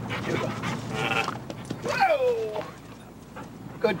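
A dog vocalizing during play: a short pitched call about a second in, then a drawn-out whining call that falls in pitch about two seconds in.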